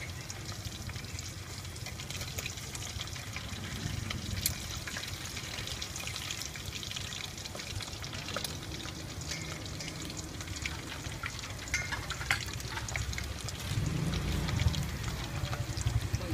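Food cooking in a little hot liquid in a steel bowl on a portable gas stove, with liquid dripping and pouring from a wire strainer of green beans and scattered light clinks of metal tongs and strainer against the bowl. A low rumble swells near the end.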